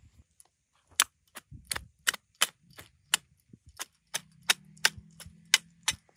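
Small metal hand hoe chopping and scraping into dry, stony garden soil: sharp, irregular clicks, two or three a second, as the blade strikes earth and pebbles. A faint low hum joins in about halfway through.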